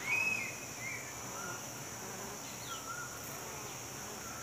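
Honeybee colony humming steadily as the mass of bees clusters in its nest cavity. Over it come short high chirping calls, the loudest just after the start and a few fainter ones later.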